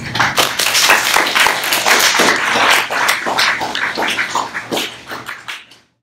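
Audience applauding, many hands clapping at once, thinning out and dying away near the end.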